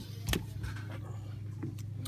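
Steady low hum of the dive boat's engine idling, with one sharp click about a third of a second in.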